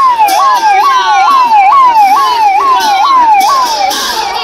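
Electronic siren on a police escort vehicle sounding a fast yelp: each cycle jumps up sharply and slides back down, about twice a second, and it cuts off shortly before the end.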